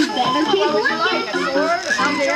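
Many children's voices talking over one another, a busy overlapping chatter of kids at play.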